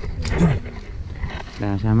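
A short low vocal sound that falls in pitch about half a second in, over a steady low rumble, then a person starts speaking near the end.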